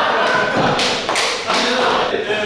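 Several young men laughing loudly together, with thumps about a second in.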